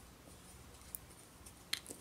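Faint soft sounds of a crochet hook working cotton string yarn, with one small click about halfway through.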